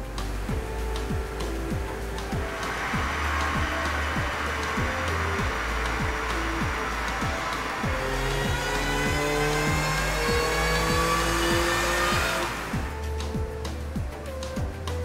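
Mini Cooper S Works' supercharged 1.6-litre four-cylinder engine at full load on a chassis dyno power run, rising steadily in pitch and ending suddenly about a second before the end, over background music.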